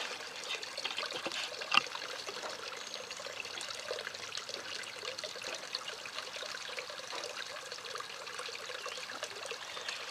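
Water poured slowly from a glass beaker, trickling onto potting soil in a plant pot as a steady, gentle dribble. A single sharp click comes a little under two seconds in.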